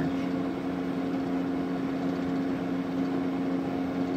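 A steady machine hum holding one low pitch, with a light hiss over it and no change in level.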